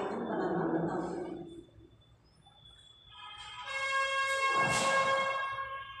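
A woman's voice for the first second or so, then a short lull, then a long, steady pitched tone rich in overtones that holds its pitch for about three seconds to the end.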